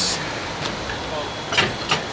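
Two short breathy puffs of laughter near the end, over a steady low hum of outdoor background noise.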